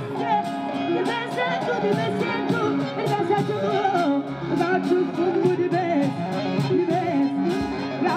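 Saharan Hassani ensemble music: plucked string instruments and hand drums keeping a steady beat under ornamented, wavering singing.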